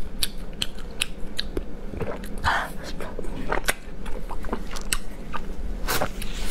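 Close-miked chewing of a piece of braised intestine dipped in chili sauce, with wet mouth clicks and smacks a few times a second and a louder smack near the end.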